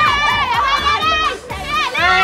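High-pitched, excited yelling and squealing from people urging the runner on, over background music with a beat.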